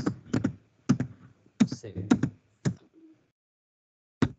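Computer keyboard keys pressed one at a time, about seven separate clacks over the first three seconds, stopping about three seconds in.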